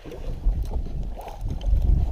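Wind buffeting the microphone in uneven low rumbles, strongest about half a second in and again near the end.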